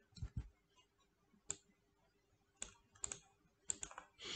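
Faint, scattered sharp clicks of a computer mouse and keyboard being worked, about eight in all, some in quick pairs, over a faint steady hum.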